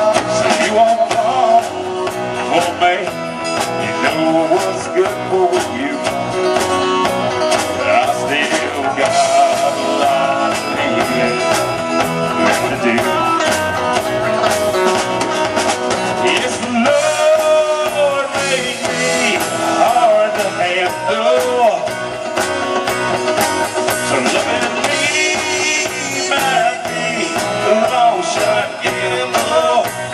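Live country-rock band playing loud and steady, with drum kit, electric bass and electric and acoustic guitars.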